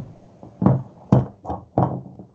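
About four dull thumps, roughly half a second apart, over a low rough noise.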